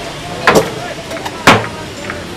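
Hammer blows on construction formwork, two sharp strikes about a second apart with a few lighter clicks between, over steady background noise.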